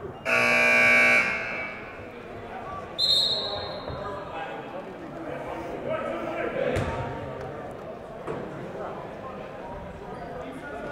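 Gym scoreboard buzzer sounding once for about a second, marking the end of a timeout, then a referee's whistle blast about three seconds in, over the murmur of the gym.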